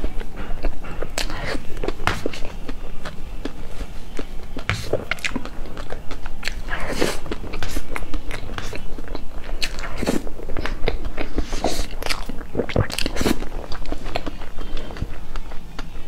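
Close-miked eating of a soft cream layer cake: wet chewing and lip smacks, with a metal spoon scooping into the cake.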